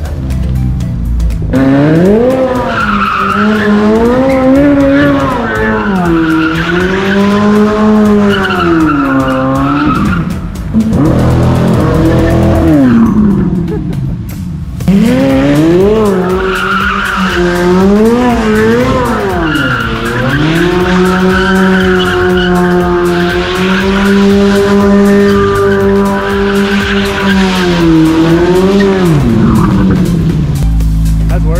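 A C8 Corvette Z06's 5.5-litre flat-plane-crank V8 revs up and down and is held high while the car spins donuts, with the rear tyres screeching and spinning. This happens in two long spells with a short lull in the middle.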